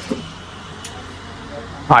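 Clothes hangers clicking on a metal clothing rail as shirts are pushed along and pulled out: a sharp click at the start and a faint one before the middle, over steady room noise.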